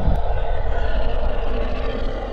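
Outro logo-sting sound effect: a loud, heavy rumble with a steady hum and hiss layered over it, and a sharp crack just after the start.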